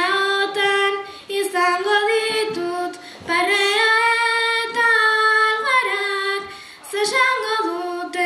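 A girl singing Basque bertso verses solo and unaccompanied into a microphone, holding long notes with short pauses for breath.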